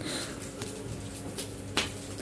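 Thick plastic wrapping around a vacuum-packed foam mattress rustling and crinkling softly under the hands, with one sharper crackle near the end.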